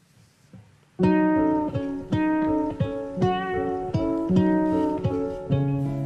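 Instrumental guitar music: after a near-silent first second, a guitar comes in loudly, picking a melodic line of notes and chords, a new one about twice a second, each ringing on and decaying.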